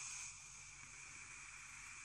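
Air being drawn through the OFRF Gear RTA's airflow during a long draw on the vape: a faint, steady hiss with a thin whistling tone in it.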